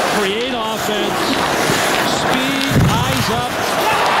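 Hockey arena crowd din heard through a TV broadcast, with a man's voice over it and a sharp thud about three seconds in.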